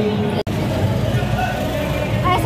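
Indistinct background voices over a low steady rumble, broken by a sudden brief dropout about half a second in.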